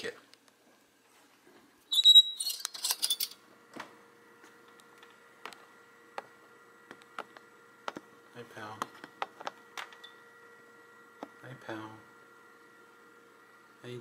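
Handling noise at a plastic pet carrier: a loud rustling clatter about two seconds in, then scattered light clicks and taps over a faint steady hum, with a couple of quiet low murmurs.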